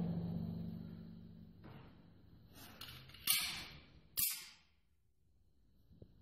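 Pistol handling: a few faint clicks, then two sharp metallic clacks about a second apart as a 1911 pistol is picked up and readied. The sound then cuts off abruptly.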